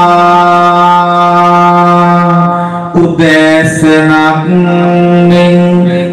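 A Buddhist monk's voice chanting sermon verse in long, drawn-out held notes. There is a short break about three seconds in, between two sustained notes.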